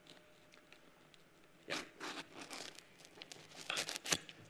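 Faint rustling and crinkling handling noises in a few short bursts, the loudest about halfway through and just before the end, with scattered small clicks in between.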